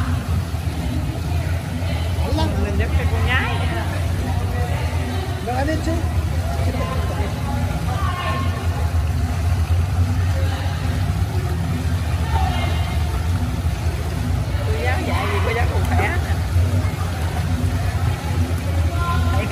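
Steady low rumble of an indoor pool hall's machinery or ventilation, with short, scattered voices over it.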